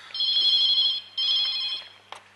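Landline telephone ringing: two trilling rings with a short break between them.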